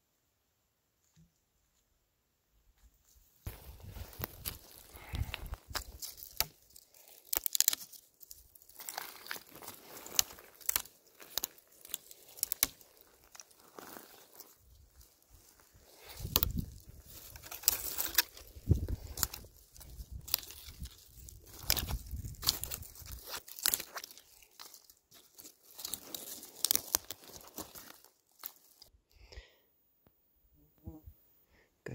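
Irregular crunching, crackling and rustling of dry twigs and brush, mixed with heavy handling thumps from a camera held close, starting about three and a half seconds in and dying away near the end.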